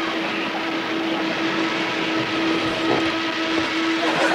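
Steady drone of a small propeller plane in flight, heard from inside the cockpit: an even rush with one constant hum.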